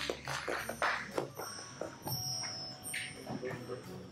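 Indistinct voices and scattered knocks and clicks of people moving about on a stage among their instruments, with a brief high steady tone about two seconds in.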